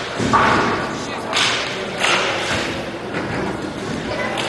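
Roller hockey sticks and puck thudding and clacking on the rink in a large hall. The loudest hit comes about a third of a second in, with further hits at about one and a half and two seconds.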